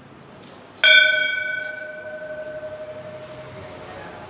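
Large hanging brass temple bell struck once about a second in, ringing with several clear tones that slowly fade.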